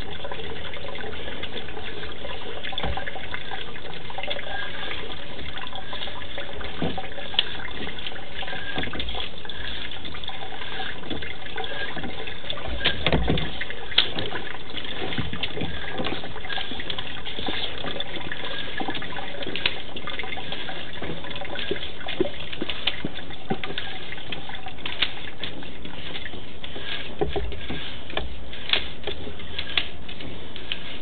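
Steady rush of running water in the sewer line, with scattered clicks and knocks, the loudest cluster about halfway through, as the inspection camera is reeled back through the pipe.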